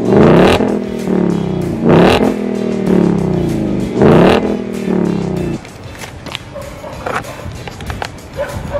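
Ford Mustang Mach 1's 5.0-litre V8 revved through its quad-tip exhaust, tuned to sound deeper than the Mustang GT's: three quick throttle blips about two seconds apart, each rising sharply in pitch and falling back. A little past halfway it settles to a lower, steadier idle.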